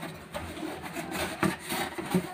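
Cardboard box being folded by hand: its flaps and panels rub and scrape against each other, with a few soft knocks, the loudest about one and a half seconds in.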